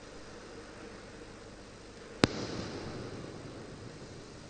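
A single sharp bang about two seconds in, followed by roughly a second of echoing decay, over a faint steady hiss.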